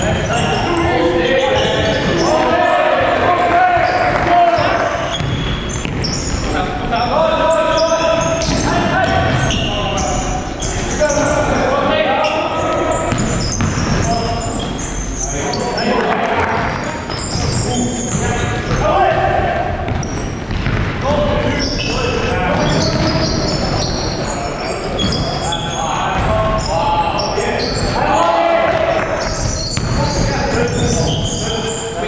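Basketball game sounds in a large gym: a ball bouncing on the hardwood court, with players' voices calling out and echoing around the hall.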